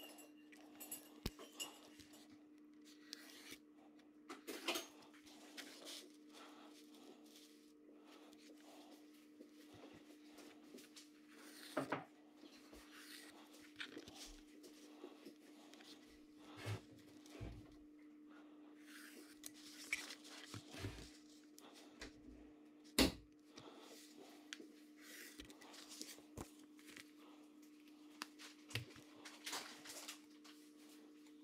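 Faint handling sounds of a thin nickel sheet and a card straight edge being shifted and tapped on a cutting mat while lines are marked on the metal: scattered light clicks and scrapes, with one sharper knock about two-thirds of the way through, over a steady low hum.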